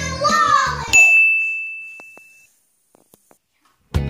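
Children's voices over background music, cut off about a second in by a single bright ding, a bell-like chime sound effect that fades away over about a second and a half.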